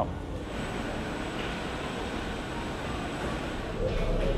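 Steady rushing noise inside a moving cable car gondola, even and unchanging.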